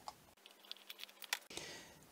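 Faint, irregular small clicks of a screwdriver working a screw out of a plastic lamp base and the plastic housing being handled, followed by a soft rustle near the end as the base comes away.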